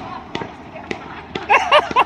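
Consumer fireworks going off: a few sharp single bangs in the first second, then from about a second and a half in a quick string of loud pops and crackles.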